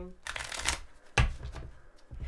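A deck of tarot cards being shuffled by hand: a short rush of sliding cards, then a couple of sharp taps about a second in.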